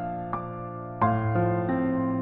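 Slow, gentle piano music: soft single notes ring out over held low notes, and a new chord is struck about a second in.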